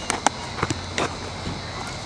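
Several short knocks and footfalls on grass from a player scrambling under two tossed baseballs with a leather glove on each hand.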